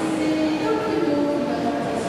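Several voices calling out at once, some holding long drawn-out calls that step up and down in pitch, over a steady background hubbub.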